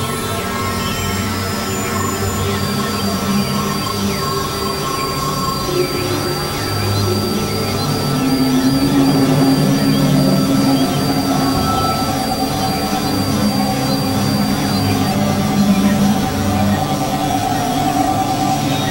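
Experimental electronic drone music from Novation Supernova II and Korg microKORG XL synthesizers: layered sustained tones over low notes that shift slowly. A thin, high, slightly wavering tone holds through most of the middle and drops out near the end.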